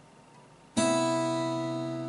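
Acoustic guitar: three strings plucked together, the fifth string fretted at the fifth fret with the open second and first strings. The chord is struck about three-quarters of a second in and left ringing, slowly fading.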